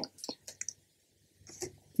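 A few faint computer keyboard keystrokes, the cell being run with Shift+Enter.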